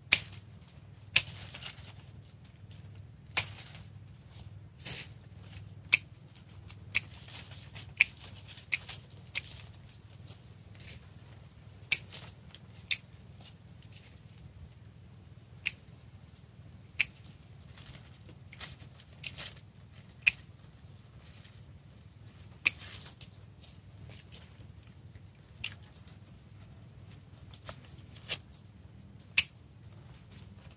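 Hand pruning shears snipping through small branches of a young yellow apricot (mai) tree: sharp single snips at irregular intervals, usually a second or more apart.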